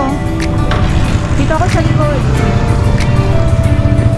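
Background music: a song with a steady beat and a singing voice.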